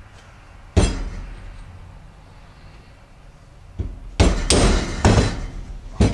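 Mallet blows on a steel punch, driving the bearing shaft out of a Polaris Outlaw ATV's rear wheel carrier, whose needle bearings are believed stuck. One sharp blow comes about a second in, then a quicker run of four or five blows from about four seconds on.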